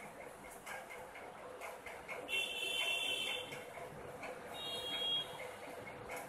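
Quiet room background with faint, quick, regular ticking, about three ticks a second. A faint high-pitched tone sounds from about two seconds in for roughly a second, and a shorter one near the end.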